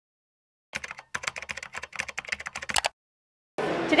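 Rapid typing: a quick, irregular run of key clicks lasting about two seconds, which stops abruptly.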